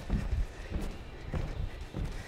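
Athletic shoes landing on a wooden floor during two-footed side-to-side ski jumps: a soft thud about every half second.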